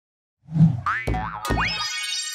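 Cartoon boing sound effects for the animated BBC iPlayer logo: a few springy boings with quick upward pitch sweeps and soft thuds, starting about half a second in.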